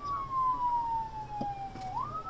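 Police patrol car siren wailing: one slow downward sweep in pitch that turns and starts rising again near the end.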